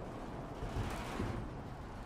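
Road traffic: a car going by with a whoosh that swells and fades about a second in, over a low rumble.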